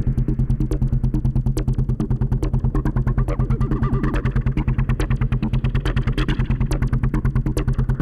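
Electronic music played live on synthesizers: sustained low synth bass with a fast, even pulse, sharp drum-machine ticks over it, and a brighter synth part swelling up and fading in the middle.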